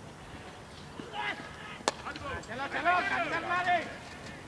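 A single sharp crack of a cricket bat striking a leather ball just under two seconds in, followed by players' voices calling out loudly.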